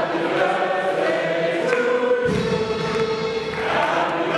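Youth choir singing in several parts, holding long, sustained notes.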